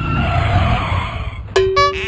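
A motorcycle comes in and skids on dry dirt: a loud rushing noise over a low engine rumble. About a second and a half in, a sudden steady tone cuts in and holds.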